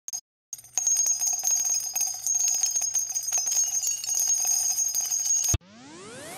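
Bells ringing in a rapid, jangling run of strikes that cuts off suddenly near the end. A rising tone sweep begins right after it.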